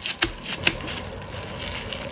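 Hand in a disposable plastic glove pressing and smoothing sticky raw meat filling over a sheet of tofu skin: a few sharp pats and crinkles in the first second, then soft rubbing.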